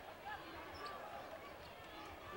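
Basketball being dribbled on a hardwood court, dull low thuds under a faint arena crowd murmur.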